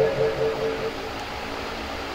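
A pause in a man's sung recitation through a microphone. A held, pulsing tone dies away over the first second, leaving a steady background hiss until the singing picks up again.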